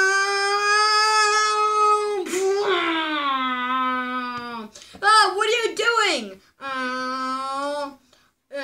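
A high-pitched, child-like voice making long held wordless vocal sounds. First comes a steady high note for about two seconds, then it slides down to a lower note that it holds. About five seconds in come short wavering cries, then another low held note.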